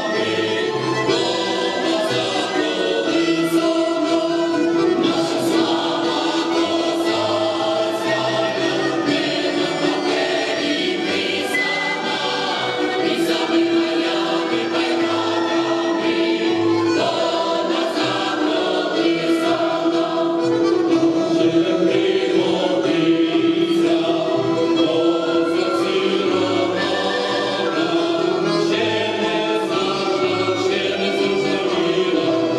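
Mixed folk choir of men's and women's voices singing a Ukrainian folk song in long held notes, accompanied by an accordion and a wooden folk pipe.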